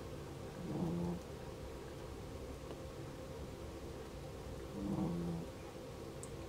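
A pet cat purring steadily, low and even, with two brief louder sounds, one about a second in and one about five seconds in.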